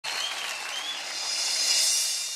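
Studio audience applauding, swelling slightly toward the end.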